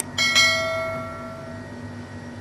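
Notification-bell sound effect of a subscribe-button animation: a click right at the start, then two quick bright dings that ring out and fade over about a second and a half. A steady low hum runs underneath.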